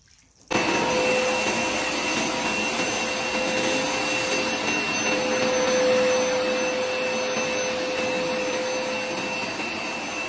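Hoover SmartWash upright carpet cleaner running, its motor a steady whine over the rush of suction as it wet-extracts spilled juice from a rug. It starts abruptly about half a second in and keeps an even level.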